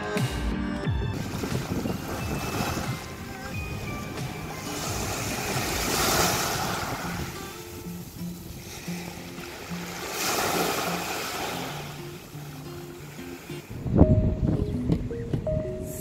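Background music over small waves washing onto a sandy beach, the surf swelling twice, about six and ten seconds in. Near the end a louder low rush of noise comes in over the music.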